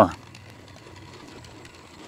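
Measuring wheel rolling across a concrete driveway, faint, its distance counter clicking rapidly as it turns.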